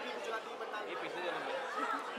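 Indistinct background chatter: several people talking at once, quieter than the interview voices.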